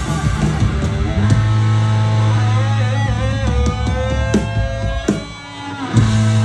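Live punk rock band playing loud: electric guitars and bass holding long ringing notes, one guitar line bending up and down in pitch, over drums. Near the end the sound dips briefly, then comes back with a loud hit.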